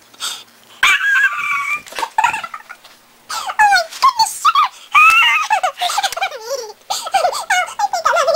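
A child's voice imitating horse whinnies and squeals: a string of high-pitched calls, most falling in pitch, one held for about a second near the start.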